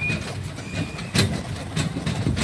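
Horse-drawn carriage on the move: a steady rumble and rattle from the rolling carriage, with a few sharp hoof clops, about a second in and again near the end.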